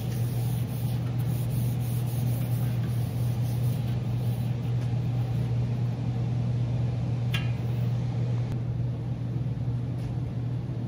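Steady low machine hum, with a single faint click about seven seconds in.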